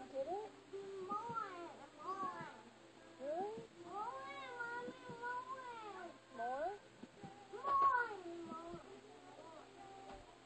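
A toddler's high-pitched, sing-song vocalizing: a string of short rising and falling squeals and longer wavering notes, the loudest about eight seconds in, then fading.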